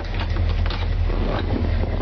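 1983 Chevrolet Silverado's engine idling, heard from inside the cab as a loud, steady deep drone. A few short knocks sound over it.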